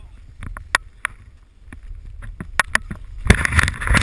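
Snow crunching and scraping against a handheld action camera, with scattered knocks from handling. About three seconds in it builds to a loud rush of snow spraying over the microphone.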